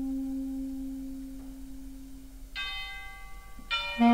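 Big band and orchestra music: a single long held low note fading slowly away, then soft higher notes entering about two and a half seconds in and again just before the end.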